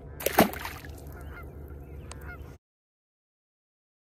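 A largemouth bass dropped back into the water with one sharp splash about half a second in, over faint honking bird calls in the distance. The sound cuts off abruptly about two and a half seconds in.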